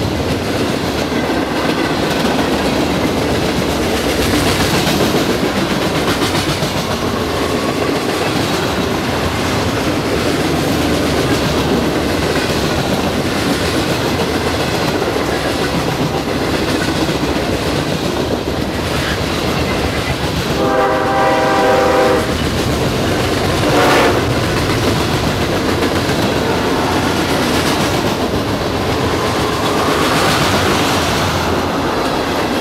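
Freight cars of a mixed freight train rolling past, steady wheel-on-rail noise. About two-thirds of the way through, a train horn sounds one blast of nearly two seconds, then a short blast about two seconds later.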